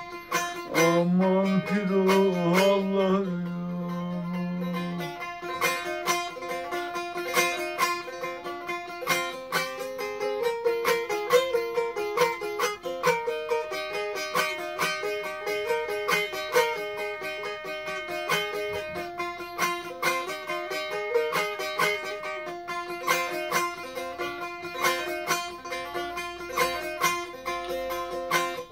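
A cura, the smallest long-necked Turkish bağlama lute, tuned in Nesimi düzeni, playing a fast picked instrumental melody of rapid, evenly struck notes. In the first few seconds a held sung note trails off under the strings.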